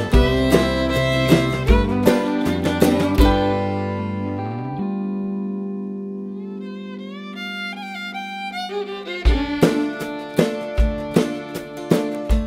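Instrumental break of a country-rock song: fiddle and guitar over bass and drums. The drums drop out about three seconds in, leaving a long held low note under fiddle lines, and the full band comes back in about nine seconds in.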